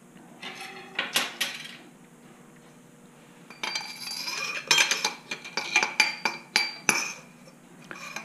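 Metal clinking and knocking as a motorcycle fork's steel damping rod is slid back and forth through its cartridge tube. There are a few knocks about a second in, then a quick run of clinks that ring briefly from about halfway.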